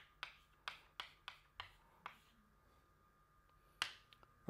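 Chalk tapping against a blackboard while writing: a run of faint sharp ticks, about two or three a second, for the first two seconds, then a pause and one louder tap near the end.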